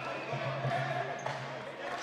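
Basketball game sound during live play: a ball bouncing on the court a few times, over a steady low hall hum and faint crowd noise.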